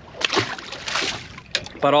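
Splash and brief slosh of water about a second long as a released triggerfish is dropped back into the sea.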